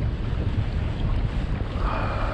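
Steady wind buffeting the action-camera microphone, with choppy water against the kayak.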